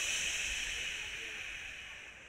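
An announcer's long drawn-out 'shhh', fading slowly, hushing the crowd for quiet before the race start.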